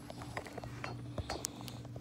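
A quick, irregular series of light clicks and clinks over a steady low hum.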